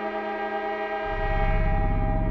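Behringer DeepMind 6 analogue polyphonic synthesizer playing a sustained many-note chord. About a second in, a deep low note joins with a fast, even pulsing, and the sound slowly grows darker.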